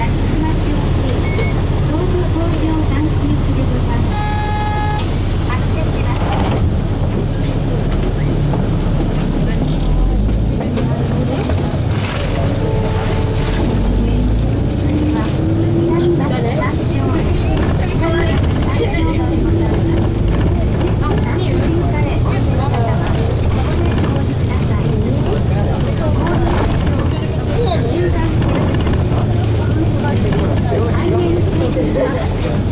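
Nissan Diesel FE6E 6.9-litre diesel engine of a KC-RM bus running in city traffic, heard inside the cabin, its revs falling and then rising again as the bus drives on. A brief horn-like tone sounds about four seconds in.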